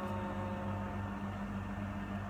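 A steady low mechanical hum with a hiss, like an appliance or air conditioner running in the room, with a faint held pitched sound that fades out about a second in.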